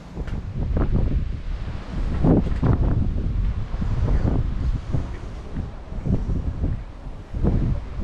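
Wind buffeting the microphone in gusts: a low rumble that swells and drops several times.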